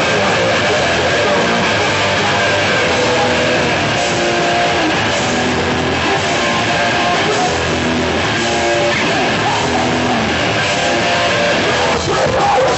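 Hardcore band playing live: loud distorted electric guitars and bass over drums, played at steady full volume.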